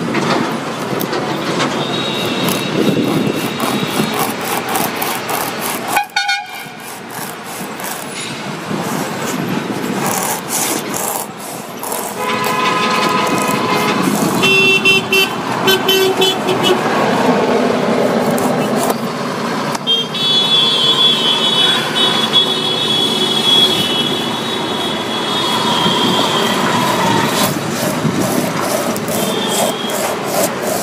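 Road traffic with vehicle horns sounding repeatedly, several of them held for a few seconds. Under it, a knife scrapes as it pares rubber off an old tyre.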